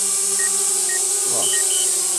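DJI Spark mini drone's propellers humming steadily as it hovers and descends, with the app's obstacle-sensor warning beeping about twice a second because the drone is close to a wall. Near the end a higher double beep sounds as the drone switches to landing.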